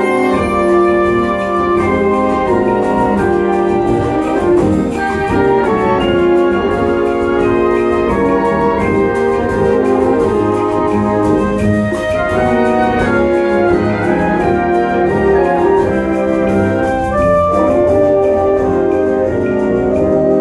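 Wind band playing a loud full-band passage: brass and woodwinds in sustained chords over percussion, the whole band coming in together at the start.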